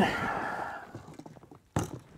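Faint rustling of clothing and gear as a seated man twists round and reaches behind him, with one short sharp knock near the end.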